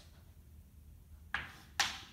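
Chalk striking and stroking a chalkboard: two short, sharp scratches about half a second apart, a little over a second in, as a line is drawn.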